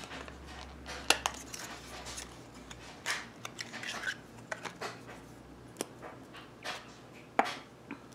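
Makeup packaging and compacts being handled on a tabletop: scattered small clicks, taps and light knocks of plastic and cardboard, with a louder knock about a second in and another near the end.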